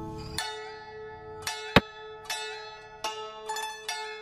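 Background music of plucked zither notes, a new note about every half second over a steady held tone. A single sharp click about two seconds in is the loudest sound, as a piece is moved on the board.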